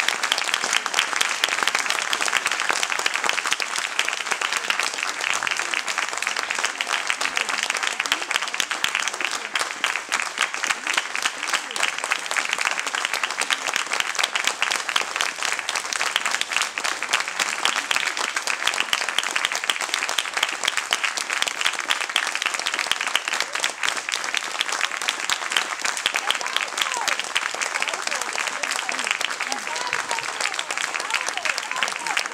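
Audience applauding steadily: dense clapping from many hands that keeps an even level without breaks.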